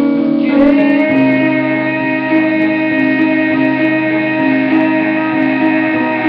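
Electric guitar played through an amplifier: a chord slides up in pitch about a second in, then held notes ring on and change about once a second.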